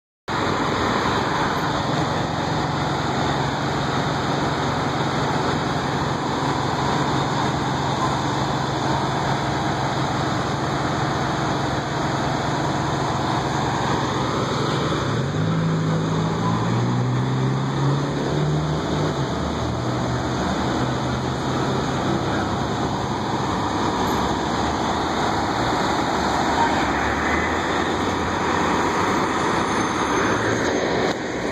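Fire department ladder truck's diesel engine idling steadily, with its pitch rising and wavering for a few seconds around the middle before settling back to idle.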